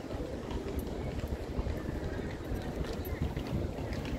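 Wind noise on the microphone, a steady low rush, over faint open-air street ambience with a few soft clicks.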